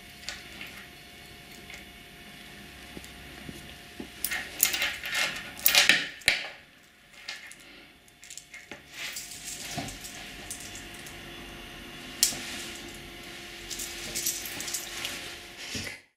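Porcelain beads and small metal parts lightly clinking and scraping against each other and against steel pliers as a strung necklace is handled. The clicks come irregularly, in a cluster about four to six seconds in and again later.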